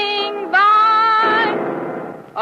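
A woman singing loudly with long held notes. She steps up to a higher note about half a second in, and the singing fades near the end.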